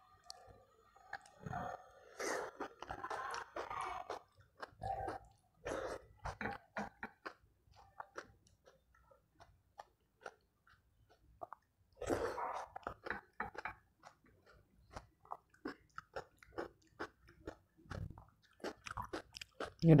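A person chewing a mouthful of rice mixed with raita by hand, with many short, wet mouth clicks and smacks coming in irregular clusters, busiest in the first several seconds and again about twelve seconds in.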